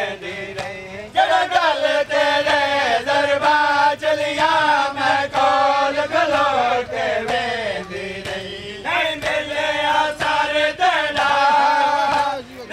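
Men chanting a noha, a Shia mourning lament, in repeated sung lines with brief pauses between phrases. Steady rhythmic slaps of chest-beating (matam) keep time under the voices.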